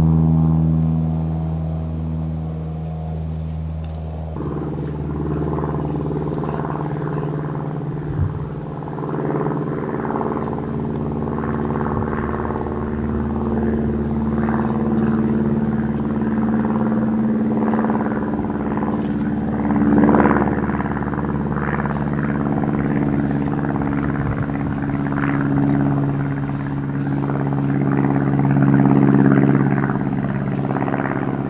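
An engine running steadily with a low, even hum; its pitch and sound shift about four seconds in and it swells a little later on.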